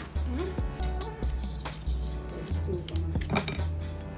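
Light clinks of kitchen utensils against a stainless-steel mesh sieve and bowl, a few short ticks, heard over background music with a steady bass.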